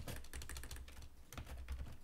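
Typing on a computer keyboard: a quick, uneven run of keystroke clicks over a low steady hum.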